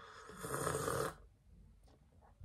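A person sipping from a drink can: one breathy rush of sound about a second long that stops short.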